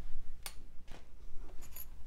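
A few light clicks of small metal wick tabs being picked up from a pile on a stone-tile surface, with the soft handling of waxed wicks.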